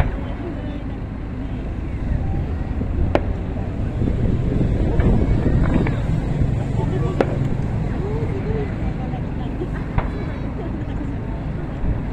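Aerial firework shells bursting: sharp cracks several seconds apart, over a steady low rumble of outdoor noise and voices.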